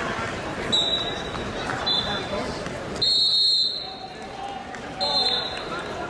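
Referee's whistle blown in four short, high, shrill blasts; the third, about three seconds in, is the longest and loudest at nearly a second.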